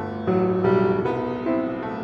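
Grand piano played solo: a melody over held chords, with new notes struck about every half second.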